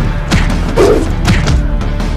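Fight-scene punch and body-blow sound effects: about three thuds roughly half a second apart, over a steady music score.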